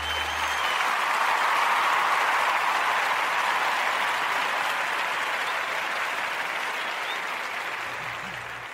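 Recorded audience applause, a steady wash of clapping that slowly fades, while the last low note of the intro music dies away in the first second.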